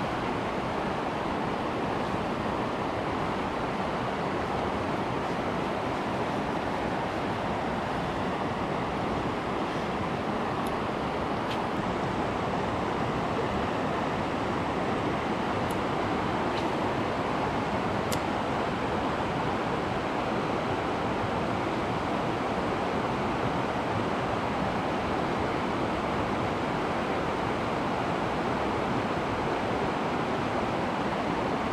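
Steady rush of a trout stream pouring over a low weir and running past close by, an even, unbroken wash of water.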